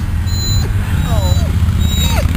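Labrador whining in short, falling whimpers, the uneasy whining he makes when uncomfortable after his operation or in a place he doesn't want to be. Under it runs a steady low rumble, with a few brief high beeps.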